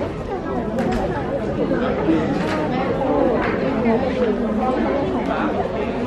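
Several people talking at once: a steady, overlapping chatter of voices.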